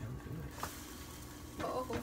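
Pancake batter sizzling in a hot pan, with a single short click about two-thirds of a second in.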